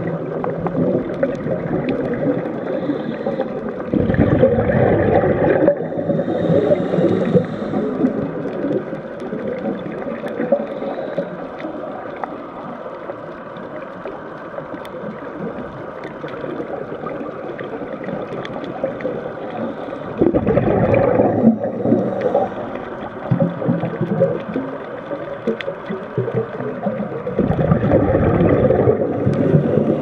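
Scuba diver's regulator heard underwater: three bubbly rumbling bursts of exhaled air, a few seconds in, about two-thirds of the way through and near the end, with a steadier, quieter bubbling and hiss between them.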